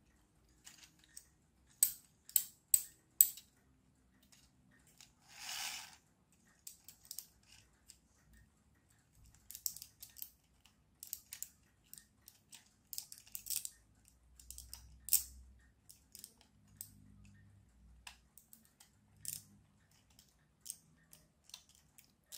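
Faint clicking and rubbing of 3D-printed plastic gears and wheels turned by hand, with four sharper clicks about two to three seconds in and a brief rustle around five seconds in. The gear teeth are binding.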